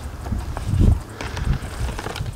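Handling noise: low, uneven rumbling and soft thumps as clear plastic tackle boxes of soft-plastic lures are shifted about, with a few faint plastic knocks; the heaviest thump comes a little under a second in.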